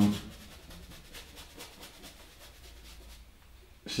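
Faint, short scratchy strokes of a paintbrush on stretched canvas as oil paint is dabbed on, several in the first three seconds, then they stop.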